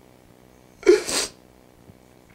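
A man's single short, loud, breathy vocal outburst about a second in: a brief voiced start that breaks into a hissing rush of breath.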